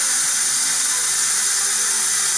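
Tap water pouring steadily into a foamy bath, a loud even hiss of running water.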